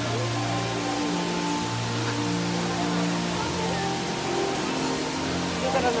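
Music with slow, sustained notes that change pitch every second or so, over a steady background hiss.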